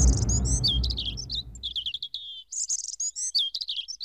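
Birds chirping: quick high calls and short trills in two bursts of song, the second starting about two and a half seconds in. A low rumble underneath fades away during the first two seconds.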